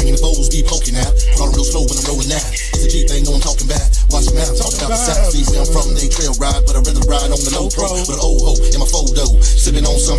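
Gangsta rap track: rapping over a hip hop beat with deep bass.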